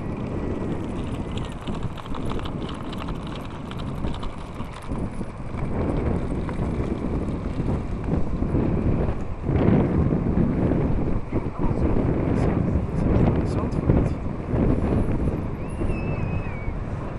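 Wind buffeting the microphone on an exposed beach: a loud, rough rumble that rises and falls with the gusts, stronger in the second half.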